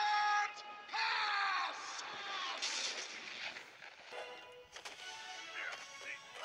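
Film soundtrack: a man shouting hard twice, strained and falling in pitch, over music, followed by a crashing noise about two to three seconds in.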